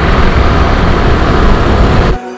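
Loud, steady wind rush buffeting the microphone of a camera on a moving motorcycle, mixed with the bike's running and road noise.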